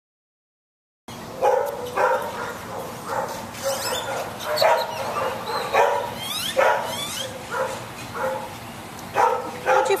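A dog barking repeatedly, about a dozen short barks that come every half second or so at first and then more sparsely, with a few high rising squeaks among them. The sound starts about a second in.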